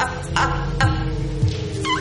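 Dramatic soap-opera underscore music with sustained tones, and a woman's high-pitched cackling laughter in short repeated bursts over it, with a squealing rise near the end.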